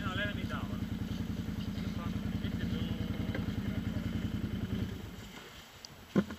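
Quad bike (ATV) engine idling close by with a steady, even pulse, then dying away and stopping about five seconds in.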